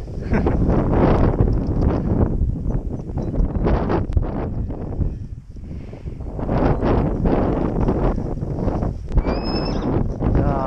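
Wind buffeting the microphone in loud gusts, easing for a moment about halfway through. Near the end comes a brief high note.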